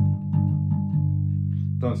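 G&L electric bass guitar holding a low G (Sol) on the third fret of the E string. The note rings steadily and slowly fades.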